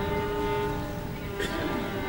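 Violin holding long sustained notes over low accompaniment, with a sharper bow attack about a second and a half in.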